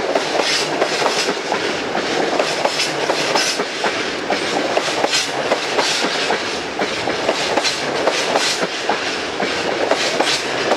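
Empty bogie tank wagons rolling past at speed. Their wheels clatter over the rail joints and junction pointwork in a rapid, uneven clickety-clack that never lets up.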